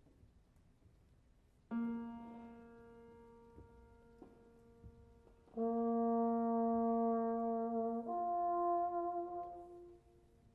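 A single piano note, a B-flat, is struck and left to die away. Then a trombone holds the same B-flat steadily and moves up to a held F about eight seconds in, stopping just before the end: the trombone tuning to the piano's pitch.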